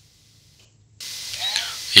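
Near silence, then about a second in a steady hiss starts abruptly and holds.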